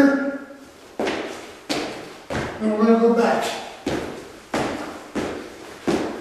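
Feet landing on a concrete floor in repeated two-footed lateral hops, about seven thuds spaced roughly 0.7 s apart, each echoing in a large room.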